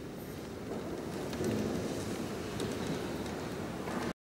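Rustling and shuffling of robes and paper as a person stands up and moves to a lectern microphone, with a few light clicks and taps.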